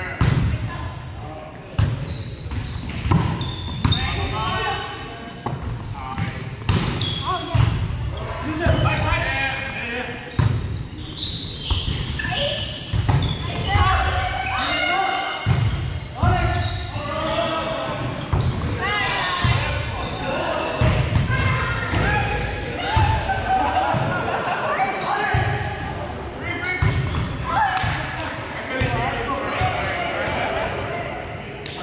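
Indoor volleyball play in a large, echoing gym: repeated sharp smacks of the ball being hit and bouncing on the wooden floor, among players' calls and chatter.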